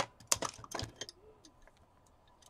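Hands handling paper and craft supplies on a table: a sharp click at the very start, then a quick run of clicks and taps over the next second, fading to a few faint ticks.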